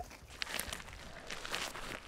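Boots crunching on loose roadside gravel in a run of short, uneven steps, with a rock picked up off the gravel.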